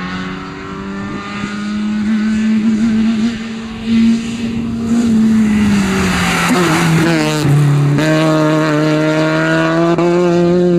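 BMW E30 rally car's engine working hard, growing louder as the car approaches. Its note falls as it passes close by, then climbs again as it accelerates away.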